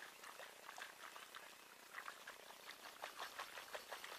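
Faint, irregular sloshing and pattering of Epsom salt solution inside a 12-volt lead-acid car battery as it is shaken so the solution coats everything in the cells.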